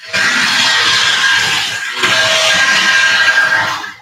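A loud hissing, whistle-like sound with a few steady tones in it, in two long blasts of about two seconds each, the second following right after the first.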